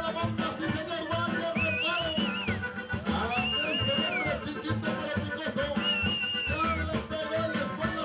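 Live Latin band music with a steady beat and shaker, a high melody phrase that rises, holds and falls away recurring every couple of seconds over a low bass line.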